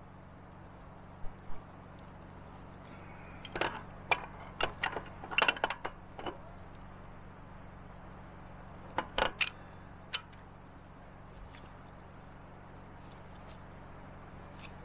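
Scattered metal clicks and clinks from a wrench tightening a pitless adapter down inside steel well casing, with a quick run of clicks a few seconds in and a few more later, over a faint steady hum.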